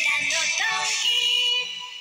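Camera no Doi TV commercial jingle: music with a sung melody, trailing off near the end.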